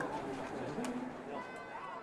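Faint voices of people talking on the pitch, with a single click a little under a second in.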